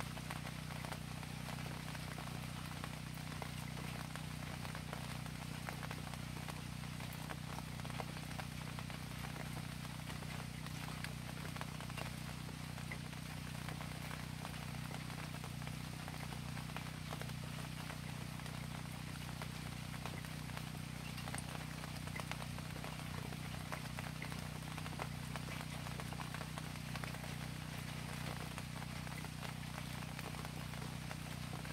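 Steady rain falling, heard as an even hiss of fine drops, over a steady low hum.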